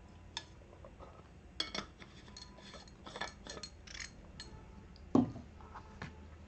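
A water bottle being handled, with a run of small clicks and clinks as it is closed, then a single louder thump about five seconds in as it is set down on a desk.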